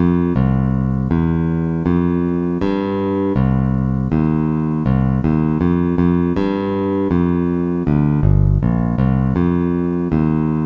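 A single-note bass line played slowly, one low note at a time at about two to three notes a second, following the tab on screen. It has a bright, keyboard-like tone.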